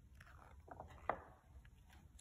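A picture-book page being turned: faint paper rustling with one sharp crackle about a second in.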